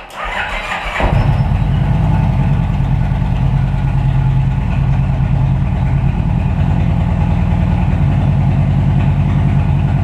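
2009 Kawasaki Vulcan 1700 Nomad's V-twin engine cranked by the electric starter for about a second, then catching and settling into a steady idle.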